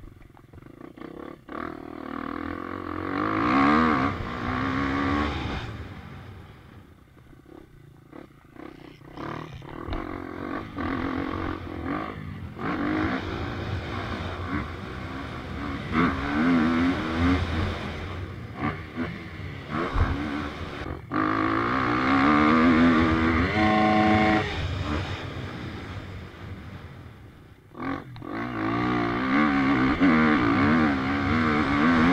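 KTM EXC-F 250 four-stroke single-cylinder dirt bike engine being ridden hard, its pitch climbing again and again as it revs up through the gears and falling back between pulls. There is a brief quieter lull about a quarter of the way in.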